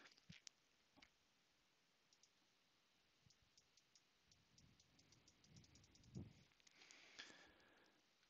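Near silence with faint clicks from working at a computer: a few single clicks at first, then a quick run of small clicks in the middle.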